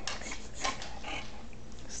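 A boxer dog moving and sitting down on a tile floor: a few faint, short clicks, with no loud sound.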